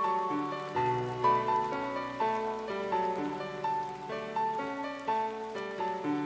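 Background music: a slow melody of held notes over chords, with a soft patter behind it.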